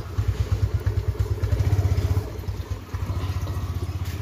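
A small motorcycle engine running with a fast, even pulsing beat as the bike moves off, growing somewhat quieter after about three seconds.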